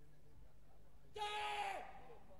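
A single kihap, the short shout of a taekwondo athlete performing a poomsae form, starting about a second in. It holds one steady pitch for about half a second, then drops away at the end.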